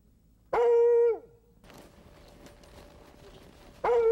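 A husky sled dog giving two short howling calls, each about half a second long on one held pitch that drops away at the end, about three seconds apart.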